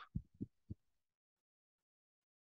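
Three soft, low thumps close together in the first second, each fainter than the last, then near silence.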